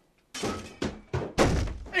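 A quick run of thuds and knocks, about four within a second and a half, as a person scrambles up and hurries over. The last thud is the heaviest, with a deep boom.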